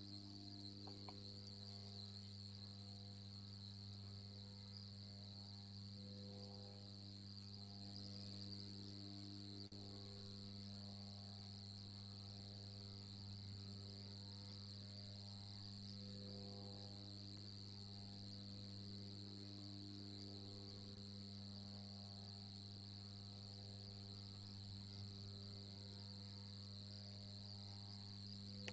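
Faint background noise of an open microphone in an online call: a steady low hum with a steady high-pitched whine above it, and no speech.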